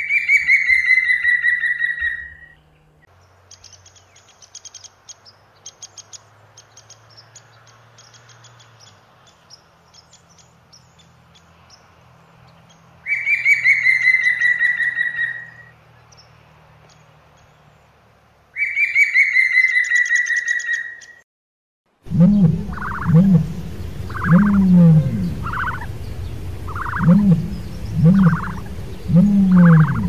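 Woodpecker calls: three long calls, each falling slightly in pitch, with a long run of quick, irregular taps on wood between the first two. After a sudden change in the last seconds, ostriches give a low call repeated about once a second.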